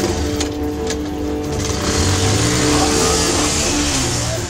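Motorcycle engine revving, its note rising and growing louder about two seconds in, under background film music with long held notes.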